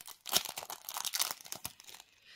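Crinkly packaging being handled as small earring findings are taken out: a quick run of crackles and rustles lasting about a second and a half.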